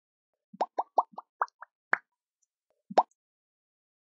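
Cartoon 'plop' sound effects on an animated outro as the social-media icons pop into place: a quick run of about seven short pops, rising in pitch, then one louder pop about three seconds in.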